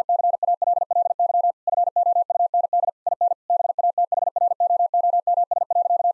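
Morse code: a single steady mid-pitched beep keyed on and off in fast dits and dahs, spelling out a practice word at high speed, with short word gaps about a second and a half and three seconds in.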